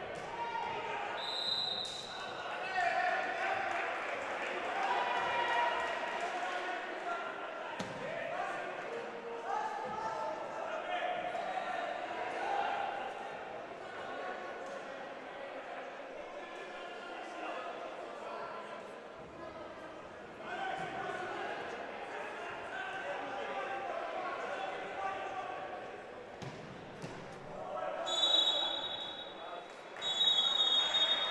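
Indoor minifootball match sound: players' and spectators' voices echoing in the hall, with the ball being kicked and bouncing on artificial turf. A referee's whistle sounds briefly about a second in, and again, louder, near the end: the half-time whistle.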